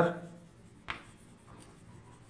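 Chalk writing on a chalkboard: faint scratching strokes as a word is written out, with one short sharp click about a second in.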